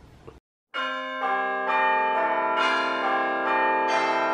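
A brief silence, then, from under a second in, outro music of ringing bell-like chimes, with new notes joining in and sustaining over one another.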